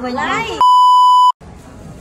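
A loud, steady electronic bleep tone, edited into the soundtrack, lasting under a second, with all other sound cut out while it plays. A woman's voice just before it, and quieter indoor crowd sound after.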